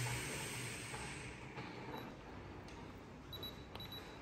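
Handheld infrared forehead thermometer beeping: a run of short, high-pitched beeps in the second half, over a soft rustle that fades in the first second or so.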